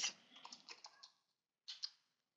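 Light clicks of computer keyboard keys being typed: a quick run of about half a dozen keystrokes, then two more near the end.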